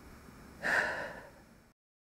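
A grieving woman takes one audible breath, a little over half a second in and lasting about half a second. Near the end the sound cuts to dead silence.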